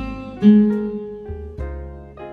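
Nylon-string classical guitar picking a slow single-note melody: one note at the start and a louder, lower note about half a second in that rings on. Under it runs a backing track of piano chords and bass.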